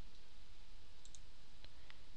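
A few faint computer mouse clicks, two about a second in and two more near the end, over a steady background hiss and hum from the microphone.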